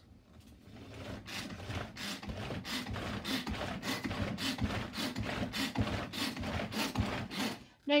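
Hand-pulled cord chopper (Power Chef) whirring in a quick, repeated rhythm as its cord is yanked again and again. Its whipping paddle churns mayonnaise and soft roasted garlic in the plastic bowl. The pulling stops just before the end.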